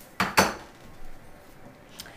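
Two quick knocks of a kitchen utensil against a dish, a fifth of a second apart, near the start, then faint room sound with a light tick.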